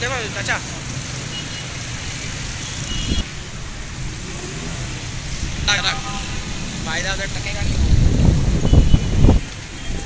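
City street traffic noise, a steady low rumble, with brief voices of passers-by. A louder low rumble, like a vehicle passing close, builds about eight seconds in and cuts off suddenly.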